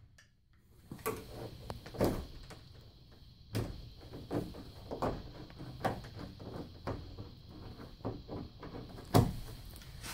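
Cheap residential deadbolt being forced by hand after hammer blows: irregular metallic clicks, knocks and rattles as the loose lock body is twisted around in the door to retract the bolt, with sharper knocks about 2 seconds in and near the end.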